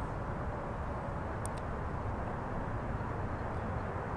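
Steady low outdoor background rumble, with two faint short high ticks about a second and a half in.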